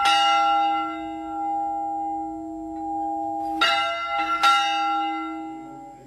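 Church bell rung by a hand-pulled rope, tolling in mourning. One strike rings on and slowly fades, then two more strikes come close together about three and a half seconds in.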